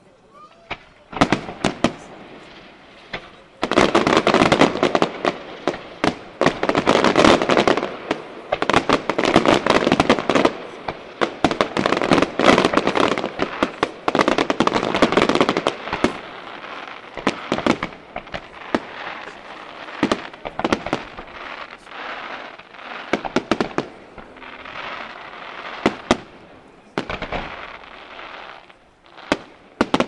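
Aerial fireworks display by the Di Candia pyrotechnics firm: a rapid barrage of shell bursts and crackle. It swells into a dense, nearly continuous volley from about four seconds in until about sixteen seconds in, then thins to separate bangs.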